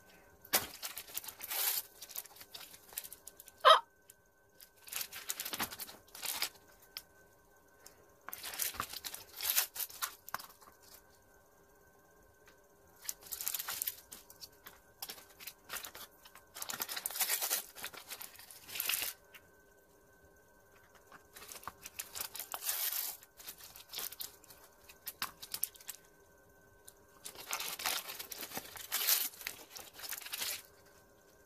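Crinkly plastic packets from Miniverse food kits being torn open and crumpled by hand, in bursts of crackling a few seconds apart. A single sharp click about four seconds in is the loudest sound.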